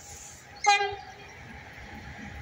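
Electric locomotive (CFR class 060-EA, number EA 613) sounding one short horn toot, about a third of a second long, a little over half a second in. The steady rumble of the approaching train runs underneath.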